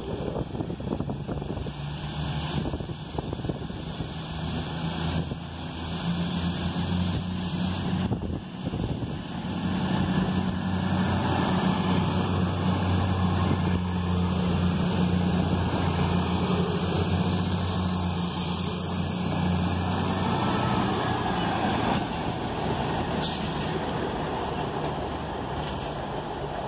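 East Midlands Trains Class 222 Meridian diesel multiple unit departing, its underfloor diesel engines running under load. The engine note grows louder as the train draws past, is loudest from about ten to twenty seconds in with a faint high whine above it, then fades as it pulls away.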